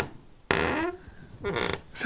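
A broken door that won't shut, creaking in two short bursts: one about half a second in and another near the end.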